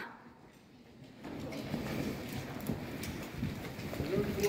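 Near silence for about a second, then faint, irregular low thudding of horses' hooves moving over the soft sand footing of an indoor riding arena.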